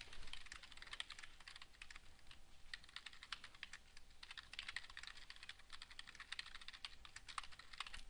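Faint computer keyboard typing: a quick, irregular run of keystrokes, several a second.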